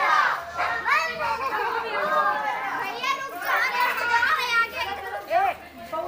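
Children's voices calling and shouting over one another, with some adult talk mixed in.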